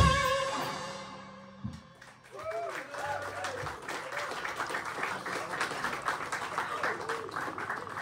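A live rock band's last chord ringing out on electric guitars and fading over about two seconds, then audience clapping with voices calling out.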